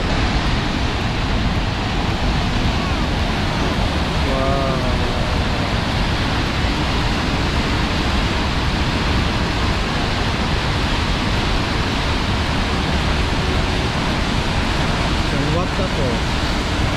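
Steady, loud rushing of Sunwapta Falls, a large river waterfall pouring through a narrow rock gorge, heard close up. A faint voice comes through briefly about four seconds in and again near the end.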